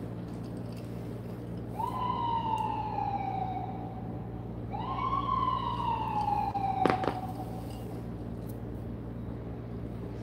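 Two long siren-like wails, each jumping up near the start and then slowly falling in pitch, with a short gap between them. A sharp click comes near the end of the second wail.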